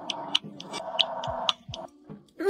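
A person gulping down a glass of water, with repeated swallows: sharp wet clicks a few times a second and a low falling gulp about once a second.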